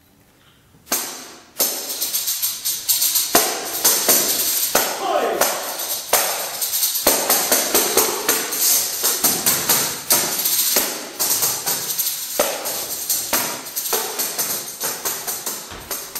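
Tambourine played solo: after a quiet first second, two sharp hits, then a dense run of rapid strikes and jingle rattles with frequent accents.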